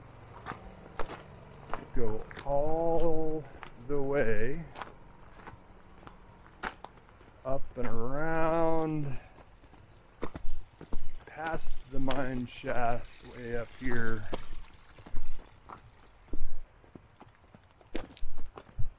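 Footsteps on a loose gravel and rock path, with a man's voice breaking in several times with short, unclear vocal sounds.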